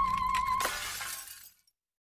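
The logo jingle's held, slightly wavering high note ends about two-thirds of a second in with a sudden crash sound effect. The crash fades away within about a second.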